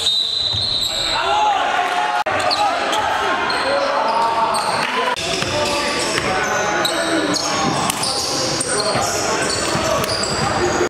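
Basketball gym sounds: players' and spectators' voices, with a basketball bouncing on the hardwood floor.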